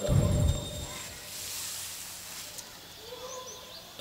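Faint outdoor background through the microphone during a pause in speech, with a soft hiss in the middle and a few faint high bird chirps near the end.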